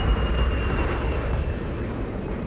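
Steady aircraft engine rumble with a deep low end and a faint high whine that fades out about a second and a half in.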